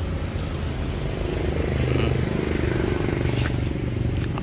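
A motor engine running steadily in the background: an even low hum.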